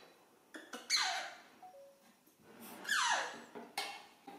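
Baby macaque crying for milk: two loud squealing calls, each falling steeply in pitch, while a spoon clicks a few times against the formula tin.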